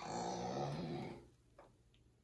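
A baby's low-pitched, drawn-out vocal sound that stops just over a second in.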